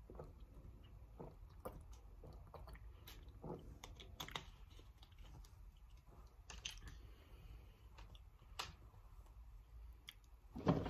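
Faint drinking sounds and handling of a plastic water bottle: a few soft gulps and scattered small clicks and crinkles over a low steady room hum.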